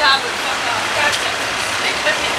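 Street noise: steady road traffic with snatches of people's voices, one voice briefly at the start.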